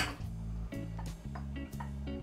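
Soft background music with steady low notes. A few faint clicks come from cherries being tipped into a metal saucepan of hot syrup.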